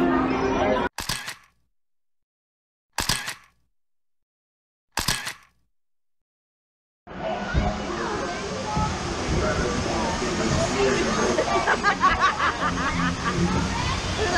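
Three short sharp snaps about two seconds apart over silence. About halfway through, a steady rush of water and riders' voices begins on the Splash Mountain log flume ride.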